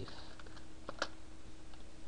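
A few keystrokes on a computer keyboard as a word is typed, the loudest about a second in, over a faint steady hum.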